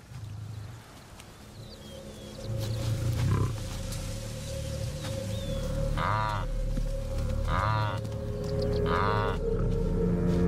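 Wildebeest calling three times, short nasal calls about half a second long and roughly a second and a half apart in the second half, over a steady low music bed with a deep rumble about three seconds in.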